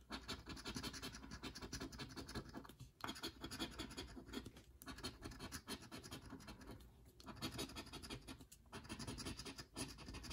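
A coin scratching the coating off a paper scratch-off lottery ticket in quick, rapid strokes, in several runs broken by short pauses every second or two.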